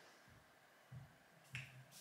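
Near silence broken by a couple of soft low thuds and one sharp small click about one and a half seconds in, as a small plastic jar of loose eyeshadow pigment is handled in the fingers.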